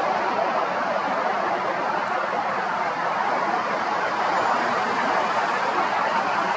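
Steady outdoor background noise of road traffic, an even rush with no distinct events.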